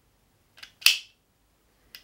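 Novelty butane-lighter knife's spring-loaded automatic blade firing open: a faint tick, then one sharp click a little under a second in.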